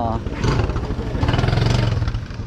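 A small motorbike engine running at low revs, louder in the second half, over the chatter of voices in a street market.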